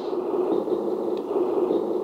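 Simulated truck engine idling, played through the small speaker of a LESU RC truck sound board: a steady, even running sound.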